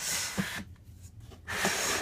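Clear plastic tub sliding out of a snake rack shelf: a short scraping rub at the start and another near the end, with a few light knocks between.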